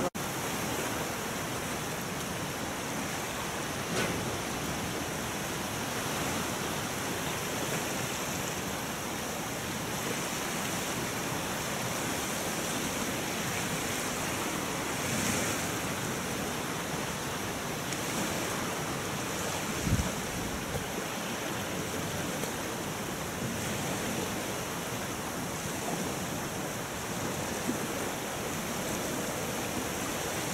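Steady rushing of strong wind across the microphone, mixed with choppy lake water. There is a brief low thump about two-thirds of the way through.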